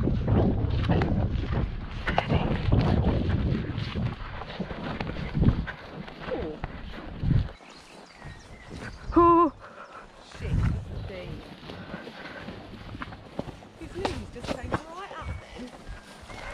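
A horse's hooves striking wet, churned mud at a steady pace, with wind buffeting the microphone. Both are loud for the first few seconds, then quieter and more irregular. About nine seconds in there is one short, wavering call.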